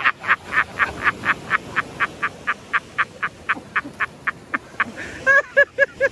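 A person's long, breathless laughter: a fast run of wheezing breaths, about four a second, that gradually spaces out, then a few voiced laughs near the end.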